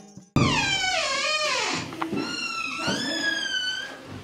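A high-pitched cry starting abruptly just after the start, held long and sliding down in pitch, followed about two seconds in by a second long cry that rises and then falls.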